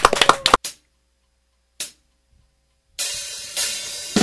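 Brief handclapping that stops about half a second in, then near silence broken by a single short click. About three seconds in, a cymbal crash rings out and swells again as a live rock band begins playing.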